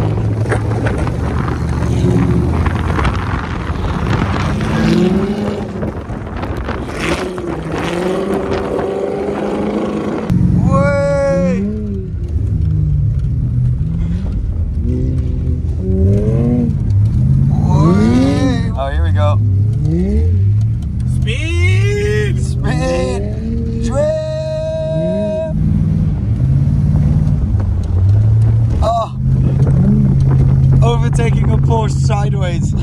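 Car engine and road noise heard from inside the cabin while drifting on an ice track. From about a third of the way in, voices rising and falling in pitch sound over a lower engine drone.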